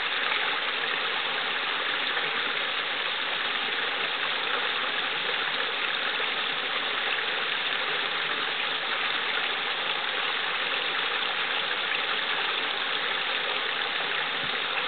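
Small brook running down a short cascade between rocks into a pool: a steady, even babble of flowing water.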